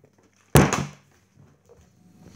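A flipped, partly filled plastic juice bottle landing on a wooden table with one sharp thud about half a second in.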